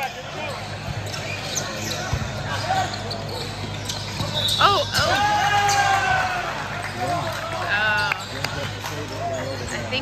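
Volleyball rally in a gym: sharp thumps of the ball being served and hit. A loud drawn-out call rings out about halfway through, over background voices.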